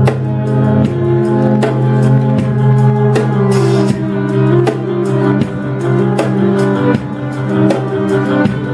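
Live instrumental music: violin and upright bass playing long sustained notes over a steady beat on a drum kit, in a largely improvised piece.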